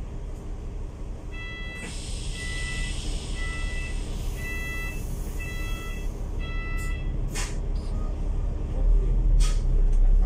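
Warning beeper of a KMB Alexander Dennis Enviro500 MMC double-decker bus sounding six beeps, about one a second, while the bus stands at a stop with its diesel engine idling and a hiss of air from the doors or brakes. The engine grows louder near the end.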